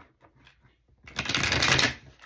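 A deck of oracle cards being shuffled by hand: a few faint card clicks, then about a second in a rapid burst of cards flicking through that lasts just under a second.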